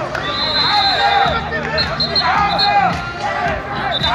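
Several voices shouting and calling out loudly at once, in overlapping rising-and-falling cries, from players and bench during a beach handball game. A high whistle sounds early for about a second, followed by a few short blasts.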